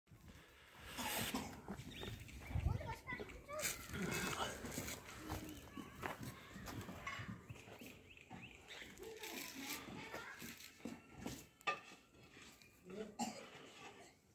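Indistinct voices with scattered short knocks and scuffs.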